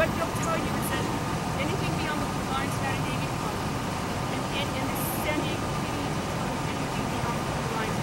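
Steady street traffic noise, with faint voices in the background.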